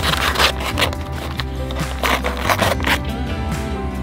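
Background music, over which a paper cement bag is slit and torn open with a blade in two bursts of ripping: one at the start lasting about a second, and another about two seconds in.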